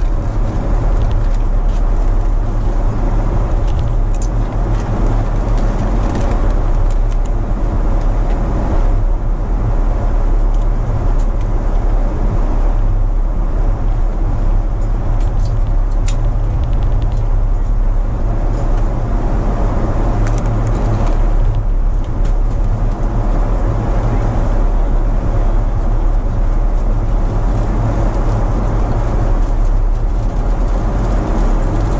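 Steady, loud cabin drone of a Boeing 777-200ER airliner in cruise: the rumble of engines and airflow, heaviest in the deep bass. A few faint light clicks sit on top of it.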